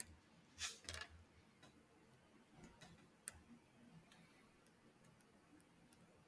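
Near silence broken by a few faint, sharp clicks and taps, scattered irregularly with the clearest about three seconds in: a stylus tapping on a tablet's touchscreen as handwriting is begun.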